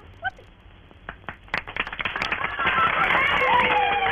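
Cartoon audience applause: a short vocal exclamation near the start, then scattered hand claps about a second in that build into dense clapping with long falling calls over it.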